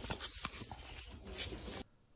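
Shop background noise from a phone's microphone: a steady low hum and hiss with a few short clicks and rustles, cutting off abruptly near the end.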